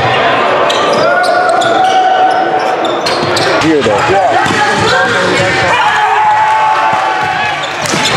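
Live basketball game audio on a hardwood gym court: a ball is dribbled and bounced in repeated sharp knocks, with players' and spectators' voices throughout.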